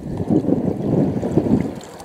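Wind buffeting the microphone: an uneven, rumbling rush that swells and falls.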